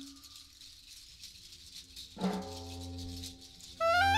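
Jazz quartet playing softly: a hand-held rattle shaken quietly, then a low note struck about halfway through that rings on. Near the end a tenor saxophone comes in with a loud, held high note.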